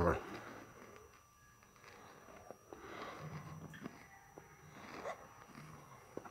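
Faint, muffled voices with a few soft clicks over quiet room tone.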